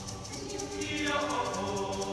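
Mixed choir singing in close harmony, a held chord easing off and then swelling into a new phrase about a second in.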